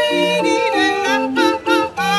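Street barrel organ playing a tune with a steady bass-and-chord accompaniment, and a woman singing along with it in a wavering, yodel-like voice.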